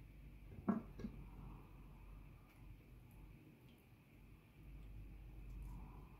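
Silicone spatula and hand working a wet marinade over whole fish in a glass bowl: mostly quiet, with two light knocks against the bowl less than a second apart, about a second in.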